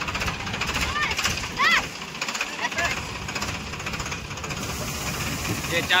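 Combine harvester and tractor diesel engines running with a fast, even clatter, with a couple of short high voice calls about a second in. Near the end a hiss joins as the combine's unloading auger starts pouring threshed wheat into the tractor trolley.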